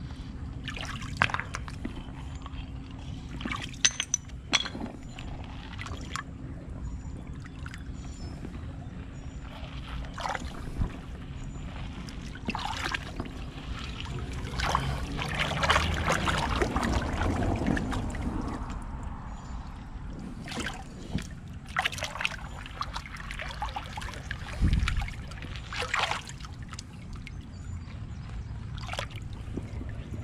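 Gloved hand swishing and stirring through gravel in shallow running water: splashing and sloshing, with scattered sharp clicks of pebbles knocking together. The splashing swells to its loudest about halfway through.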